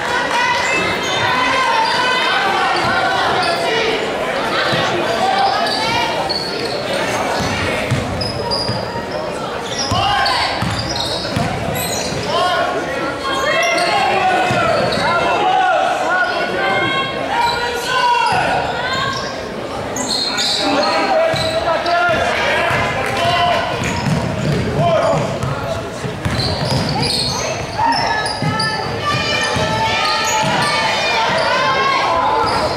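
Basketball game sounds in a large gym: spectators' voices and chatter throughout, with a ball bouncing on the hardwood court, all echoing in the hall.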